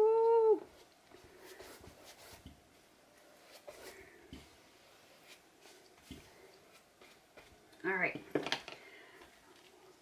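A short whine that rises and then falls in pitch right at the start, and a second brief voice-like sound about eight seconds in. Between them, faint light taps and scrapes as a wood-graining tool is drawn through wet glaze on canvas.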